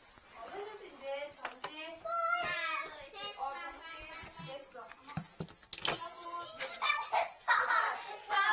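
A child's high-pitched voice talking and calling out throughout, with a few sharp knocks about one and a half, two and a half and six seconds in.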